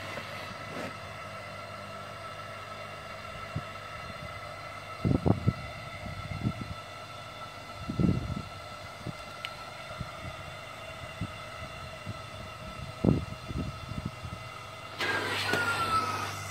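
Aquarium diaphragm (membrane) air pump humming steadily as it inflates a vinyl paddling pool, with a few dull thumps of handling against the pool.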